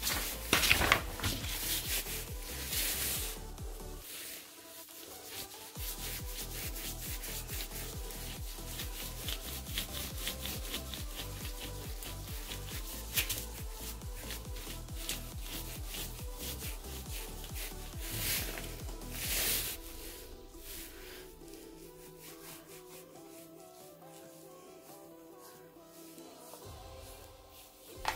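Bristles of a flat paintbrush rubbing across paper in quick repeated strokes as thin carbon conductive ink is brushed on, with faint background music; the strokes thin out and get quieter in the last few seconds.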